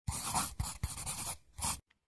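Scribbling on paper: a run of scratchy strokes with a few sharp taps, then one last short stroke near the end before it stops.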